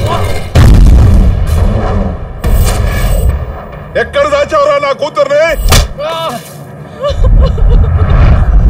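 Film fight-scene sound effects: a heavy booming hit about half a second in and another sharp hit near six seconds, with a man's loud, wavering shout in between.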